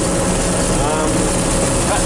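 John Deere 4400 combine running steadily while harvesting soybeans, heard from inside the cab: engine and threshing machinery noise with a steady hum.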